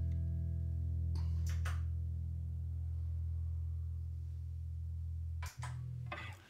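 Electric guitar, a Stratocaster-style solid-body, letting the last chord of a song ring out and slowly fade, with a few light picked notes over it between one and two seconds in. The strings are cut off suddenly about five and a half seconds in, leaving a short ringing tail.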